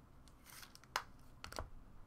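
Faint handling of trading cards as a card is slid off a stack. There is a sharp click about a second in and a couple of light clicks about a second and a half in.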